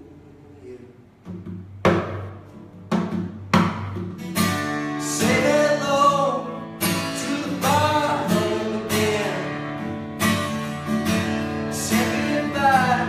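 Acoustic guitar strummed with a man singing along. It opens quietly, the strumming starts about two seconds in, and the voice joins a couple of seconds later in long, held notes.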